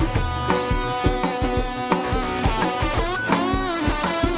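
Electric guitar playing a melodic lead line over a live band, with drums keeping a steady beat. About three seconds in, the guitar notes bend and waver in pitch.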